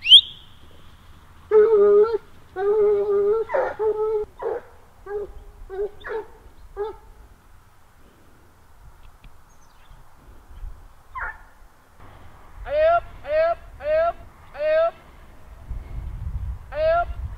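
A pack of Grand Bleu de Gascogne hounds baying while hunting a hare on the scent. Long drawn-out howling notes come in the first few seconds, then shorter cries that thin out into a quieter stretch. Near the end come about four quick falling yelps, roughly two a second.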